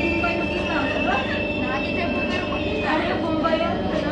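Singapore MRT train heard from inside the car as it runs along a station platform: a constant running rumble and hum, with a steady high whine that stops about three seconds in.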